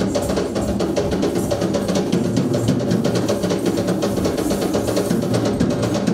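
Fast, continuous hand drumming on a traditional Sri Lankan double-headed drum, many strikes a second without a break, over steady accompanying music.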